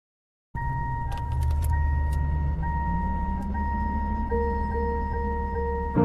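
Car sounds at the opening of the song: a car's warning chime sounds steadily over a low engine idle, with keys jangling and clicking. A soft sustained keyboard note comes in about four seconds later.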